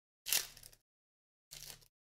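Foil trading-card pack wrappers crinkling as they are handled, in two brief rustles, the first the louder.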